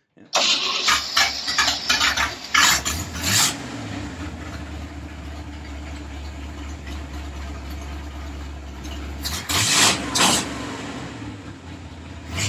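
Chevrolet 327 Turbo-Fire small-block V8 starting up, catching almost at once and running ragged and uneven for the first few seconds before settling into a steady idle. Near the end come two brief louder bursts as the throttle is worked.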